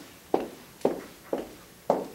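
Footsteps: four steps about half a second apart, each a short, sharp step.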